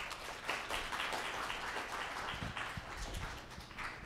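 An audience applauding: a dense patter of many hands clapping that builds about half a second in and fades out near the end.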